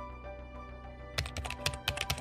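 Computer keyboard typing, a quick run of key clicks starting a little past halfway, over soft steady background music.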